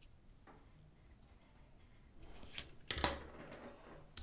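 Wooden colored pencils being handled: faint at first, then from about two seconds in a short clatter as they knock together, with one sharp click near three seconds.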